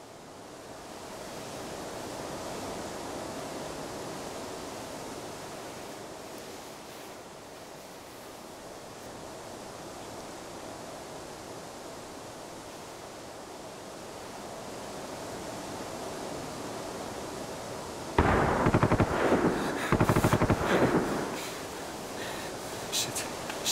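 A steady rushing outdoor ambience, then, about 18 seconds in, two long bursts of rapid automatic gunfire with a brief break between them.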